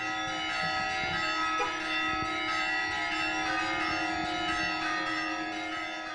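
Church bells ringing, many overlapping tones hanging on together.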